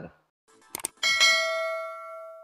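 Subscribe-button sound effect: two quick mouse clicks, then a notification bell ding that rings out and fades over about a second and a half.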